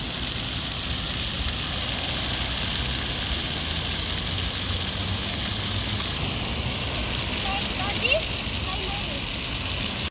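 Steady splashing hiss of a plaza fountain's water jets, with faint voices near the end.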